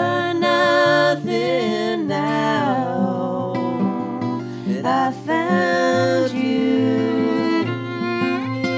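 Acoustic guitar strumming chords under a fiddle playing an instrumental melody, with several slides between notes.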